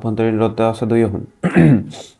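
A man speaking, then a short throat clearing near the end.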